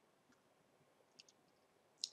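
Near silence, with a faint, quick double click of a computer mouse about a second in.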